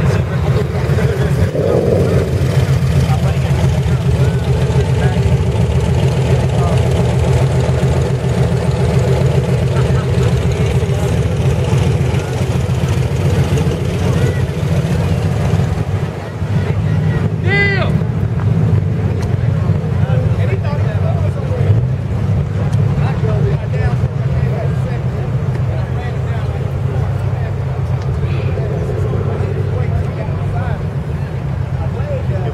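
Steady low rumble under indistinct background voices. A little over halfway through, a brief high call rises and falls in pitch.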